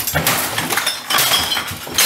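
Glass smashing, with shards clinking and several crashes in a row as things are broken.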